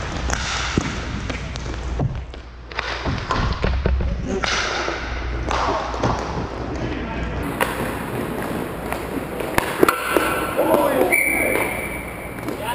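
Inline roller hockey play: skate wheels rolling on the rink floor, with sharp knocks of sticks and puck scattered throughout and players' voices calling out near the end.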